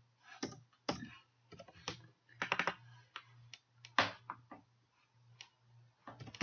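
Typing on a computer keyboard: irregular keystrokes, some in quick runs, over a faint steady low hum.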